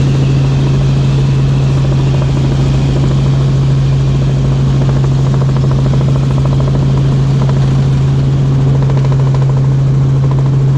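Light helicopter in flight, heard from inside the cabin: the engine and rotor make a loud, steady drone with a constant low hum.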